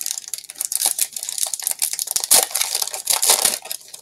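Foil Pokémon booster pack wrapper crinkling and tearing as it is ripped open by hand: a dense crackle of sharp crinkles, loudest in the second half.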